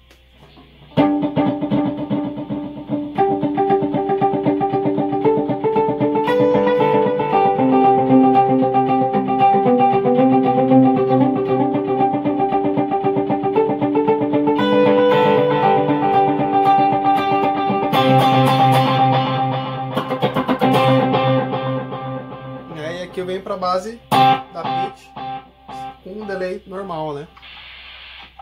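Electric guitar played through a TC Electronic G-System multi-effects floorboard: a melodic line of sustained notes with modulation, delay and reverb switched on, the notes ringing into one another. It starts about a second in and dies away a few seconds before the end.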